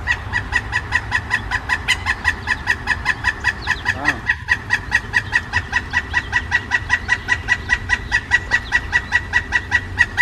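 Pileated woodpecker calling: one long run of evenly spaced notes, about six a second, that goes on and on without a break, astoundingly loud, over a low steady hum.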